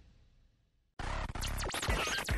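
A radio jingle fades out. About a second in, DJ turntable scratching starts suddenly, with quick pitch sweeps rising and falling.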